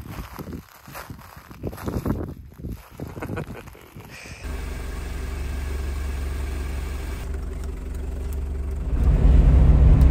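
Footsteps crunching on a gravel road for about four seconds, then a steady low engine hum from the van, which swells into the louder rumble of the van driving near the end.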